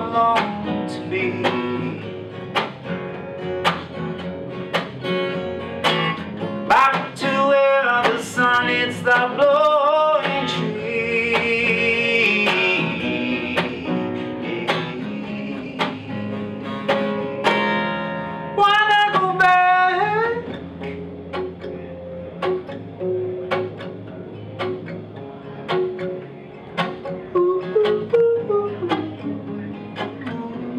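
Steel-string acoustic guitar strummed and picked, with wordless singing over it in the first two-thirds, then guitar alone near the end.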